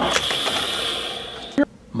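Plastic toy Batmobile's mechanism whirring and ratcheting as it is worked by hand, fading out, then a single sharp click about one and a half seconds in.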